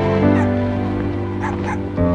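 A small dog gives about three short, high yips over soft background music of sustained notes.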